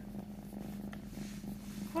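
Kitten purring steadily while its belly and head are rubbed, over a constant low hum.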